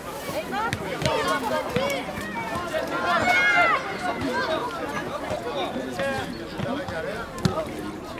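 Overlapping voices of spectators and young players talking and calling out over one another, with a few short sharp knocks scattered through.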